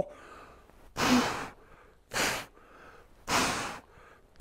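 A man breathing out hard three times, about a second apart, with each rep of a dumbbell incline press.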